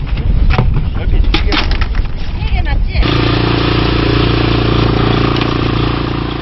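Knocks and clatter of work on a small fishing boat's deck, with snatches of voices. About halfway through, this gives way suddenly to the steady drone of the boat's engine running as the net is hauled in.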